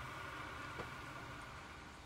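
Faint, steady background hiss of room tone with no distinct event, dropping still lower near the end.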